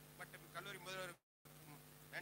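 A man speaking through a public-address system over a steady low electrical buzz. The sound cuts out completely for a moment just after a second in, then only the buzz continues.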